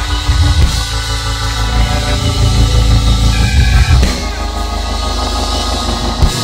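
Live church band music: held keyboard chords over bass and drums, the chord changing about four seconds in.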